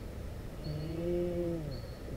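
A person's low, drawn-out vocal sound, such as a groan or an "ohh", held for about a second and dropping in pitch as it ends.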